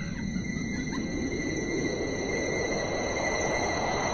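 Steady rushing noise of shallow water at a sandy shoreline, with a faint steady high-pitched whine over it.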